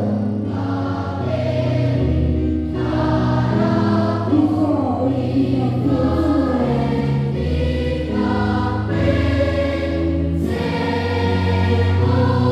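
Children's choir singing a hymn in unison phrases, accompanied by an electronic keyboard holding sustained bass notes and chords.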